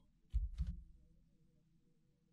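Two quick dull knocks close together about a third of a second in, then a faint low hum.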